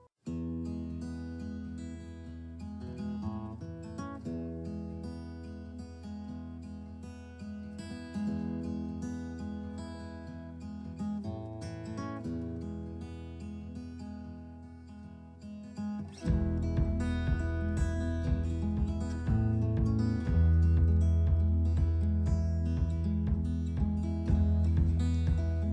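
Background music: an acoustic guitar piece that starts just after a brief silence and grows louder, with a heavier bass, about sixteen seconds in.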